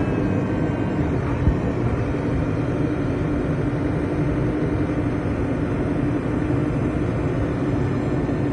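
Diesel engine of a JCB 526 telehandler running steadily while the telescopic boom is lowered, with one brief knock about a second and a half in.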